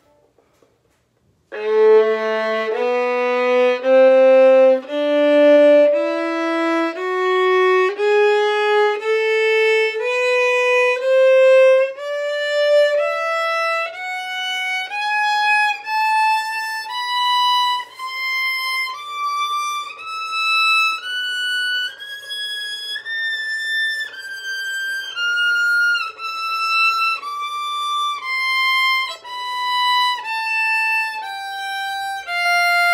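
Violin playing a three-octave A melodic minor scale slowly, one held bowed note at a time, as intonation practice. It starts about a second and a half in on the low A, climbs step by step to the top A a little past two-thirds of the way through, then starts back down.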